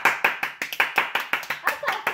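Two people clapping their hands in quick, even applause, about eight claps a second.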